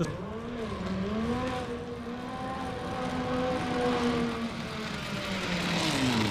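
Zipline trolley pulleys running along the steel cable: a steady whirring hum that climbs a little in pitch in the first second or so and then holds, with a rushing noise building toward the end as the rider comes close.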